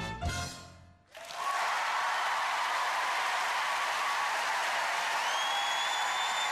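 The last note of a musical number dies away, then a theatre audience breaks into steady applause and cheering. About five seconds in, a high steady whistle rises above the clapping.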